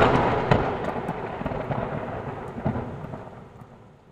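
Cinematic boom sound effect for a logo sting: one sudden heavy hit, then a long thunder-like rumbling, crackling tail that fades out over about four seconds, with smaller hits about half a second in and near three seconds.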